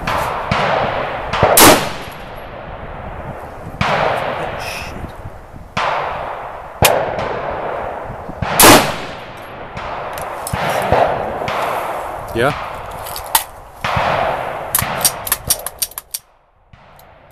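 Single rifle shots from an Armalite AR-180 in 5.56 mm, fired a second or two apart, each followed by a long rolling echo. The loudest, sharpest cracks come about a second and a half in and again about eight and a half seconds in. Near the end there is a quick run of short metallic clicks.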